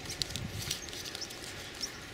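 Paper apple bag crinkling and rustling in the hands as it is worked off an apple on the tree, with leaves brushing: light, irregular crackles.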